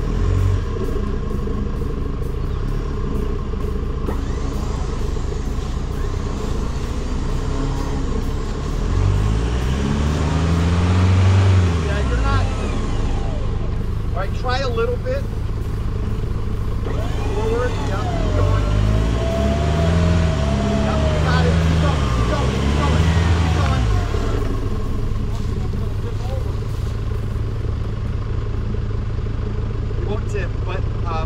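Truck engines during a winch recovery on a muddy off-road trail: a steady idle throughout, with two spells of revving that rise and fall in pitch, about eight to twelve seconds in and again from about eighteen to twenty-four seconds, as the stuck Chevrolet ZR2 Bison is pulled up out of the rut.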